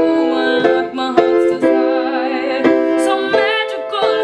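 A woman singing a slow acoustic song, her voice wavering over sustained chords struck on an accompanying instrument about every half second to a second.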